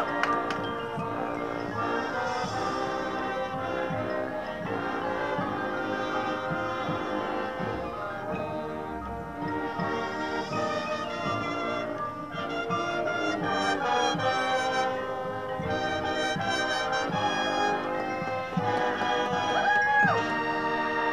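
High school marching band brass playing sustained full chords with percussion. From about 12 seconds in it moves into a more rhythmic passage with repeated percussion strokes.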